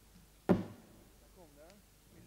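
A single sharp hit with a brief pitched ring, about half a second in, well above the faint background; afterwards only faint voice-like sounds.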